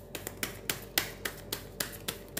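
A tarot deck being shuffled by hand, with a sharp snap of cards about four times a second in an even rhythm.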